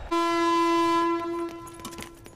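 Train horn sounding one long, steady note, loudest for about the first second and then fading away.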